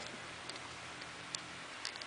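Quiet room hiss with about four faint, soft clicks spread through it, the small taps of hands handling a plastic LEGO tower and the camera.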